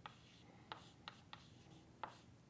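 Chalk writing on a chalkboard: about four faint, short taps and scratches as letters are chalked.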